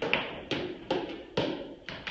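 Repeated sharp knocks, five in two seconds at an even pace, each with a short echo, from children playing on the training-room floor.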